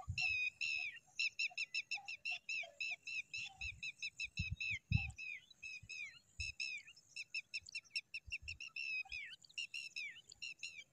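Pipit nestlings begging at the nest: a fast, unbroken series of short high chirps, several a second. A few low bumps about halfway through.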